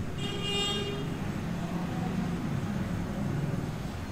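A short horn toot in the first second, then the steady low rumble of a vehicle engine and road traffic.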